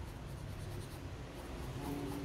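Graphite pencil hatching on drawing paper: quiet, continuous scratching strokes as a first layer of tone is laid over the darkest planes.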